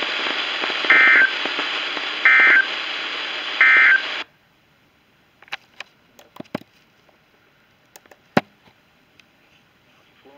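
Weather radio receiver hissing with static, then three short bursts of digital data tones: the SAME end-of-message code that closes the tornado warning broadcast. The radio then goes silent suddenly, about four seconds in, leaving a few faint clicks and knocks.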